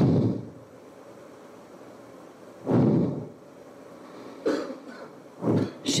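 A woman's short, breathy vocal outbursts close on a handheld microphone, four of them a second or two apart, the one near the middle the loudest, with the start of a spoken word at the very end.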